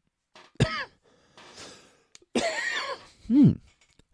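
A man coughing and clearing his throat in three short bursts, about half a second in, around two and a half seconds in, and near the end.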